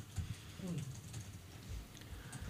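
Faint clicking of typing on a laptop keyboard in a quiet meeting room, with a brief soft voice-like sound in the first second.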